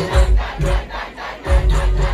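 Dancehall music playing loudly over a live sound system. A beat with deep bass hits comes in at the start, while a crowd shouts over it.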